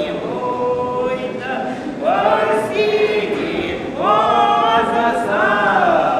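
A woman and a man singing a traditional Russian folk song together without accompaniment, in long held notes. The voices come in louder about two seconds in and again about four seconds in.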